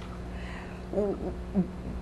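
A steady low hum of room tone, with a short, low voiced sound from a person, like a hesitant 'hmm', about a second in.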